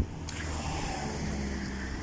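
A motor vehicle running nearby: a steady low engine hum with a light hiss above it.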